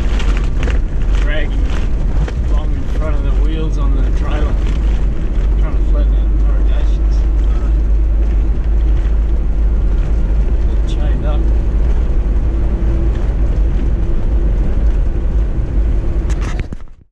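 A vehicle driving on an unsealed dirt road, heard as loud, steady road rumble and wind buffeting on the microphone, broken by frequent knocks and rattles from the rough surface.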